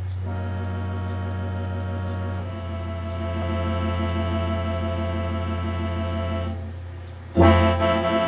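Gulbransen electronic organ in a mellow tibia voice, playing slow sustained chords over a held pedal bass note, the tones gently pulsing. The chord changes about two and a half seconds in, fades, then a louder, fuller chord comes in near the end.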